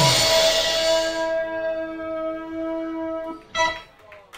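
A song ending on a held chord from electric guitar and synthesizers. It opens with a crash that fades over about a second and a half. The chord stops after about three seconds, and one short final hit follows.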